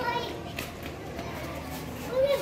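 Indistinct background chatter of several people talking, children's voices among them, with no single clear speaker.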